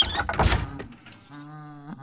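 A wooden door being opened, with a sharp knock and a heavy thud in the first half-second, then a short steady pitched sound a little over a second in.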